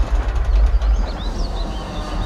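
Vintage car driving past with a deep, low engine rumble and tyre noise over a leaf-strewn drive, with a few short bird chirps in the second half.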